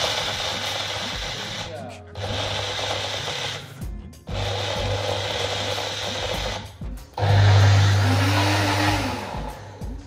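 Single-serve bullet-style blender grinding a cupful of dry nuts (cashews, almonds) into thandai masala powder, pulsed in four bursts with short pauses between them. The last burst is the loudest and ends just before the close.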